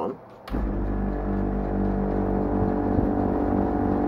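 Room air conditioner switching on about half a second in with a click, then running with a steady motor hum and fan rush. The owner says the unit is broken: it blows no cold air and only circulates the room air.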